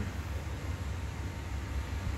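Steady low background rumble with a faint hiss: room noise with no distinct event.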